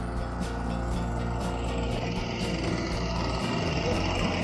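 Small engine-driven generator running steadily: an even, pitched drone with no change in speed.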